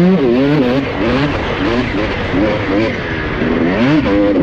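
2006 Honda CR250's single-cylinder two-stroke engine revving hard while riding, its pitch rising and falling as the throttle is worked. The revs drop early on and climb again near the end.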